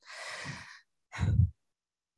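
A person sighing, a long audible breath out into the microphone, followed a little after a second in by a short low sound.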